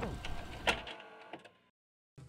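Video-tape transition effect: the last of the old commentary audio drops in pitch like a tape stopping, then a faint hiss with a few clicks fades out to silence about one and a half seconds in.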